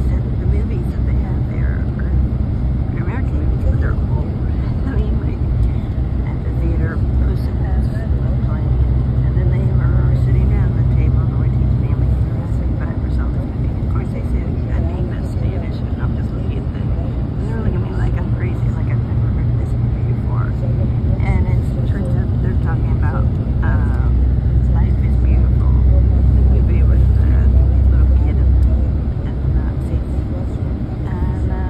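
Steady low rumble of a moving road vehicle heard from inside: engine and tyre noise on the highway, its low hum shifting in pitch and growing louder for a few seconds near the end before easing off. Indistinct voices sound faintly in the background.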